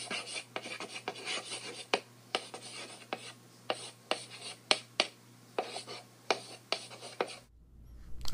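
Chalk writing on a chalkboard: a run of irregular scratching strokes punctuated by sharp taps as each letter is drawn, stopping about half a second before the end.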